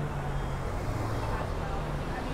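City street noise: a nearby vehicle engine's low hum, fading out over the first second and a half, with traffic and passers-by talking in the background.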